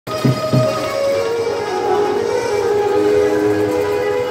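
Wedding-procession band music: several long, held notes sounding together and shifting slowly in pitch, with two drum beats near the start.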